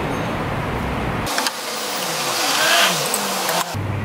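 Steady hiss of chicken sizzling on a hot grill plate, with a road vehicle passing by, swelling and fading, from about a second in until near the end.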